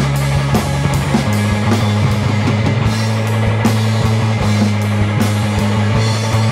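Live rock band playing: electric bass and drum kit with cymbals, with guitar. The bass holds a low note and steps down to another about a second in, under regular drum hits.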